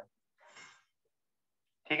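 A short, faint breath from a man pausing between sentences, about half a second in, then near silence until he starts speaking again near the end.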